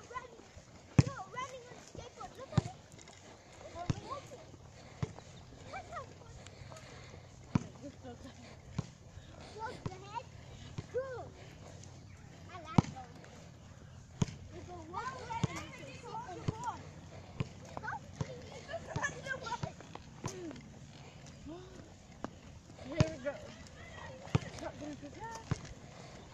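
A caster board's small wheels rolling on asphalt, a low steady hum through the middle of the stretch, with sharp clicks scattered throughout and indistinct voices over it.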